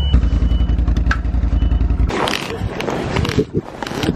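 Snowmobile engine running steadily close by, with a short high beep in the first second. After about two seconds the engine hum gives way to rustling handling noise close to the microphone.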